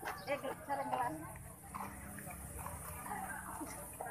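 Several people talking indistinctly in the background, with no single clear voice.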